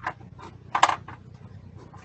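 Watercolour brush scrubbing paint in a pan palette while mixing a darker colour: a faint click, then one short scrape about a second in, over a low steady hum.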